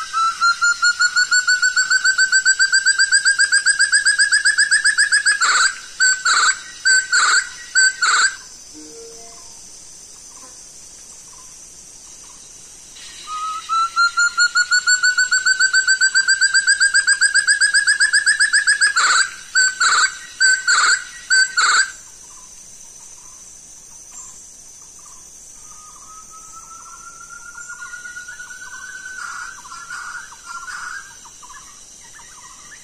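Call of the puyuh tarun (Sumatran forest partridge), most likely the lure recording played back: a long rapid trill of pulsed whistles that rises slowly in pitch, then about five separate short notes. The phrase comes twice, loud, and a fainter trill begins near the end.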